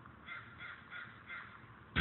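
A crow cawing faintly, four calls in quick succession.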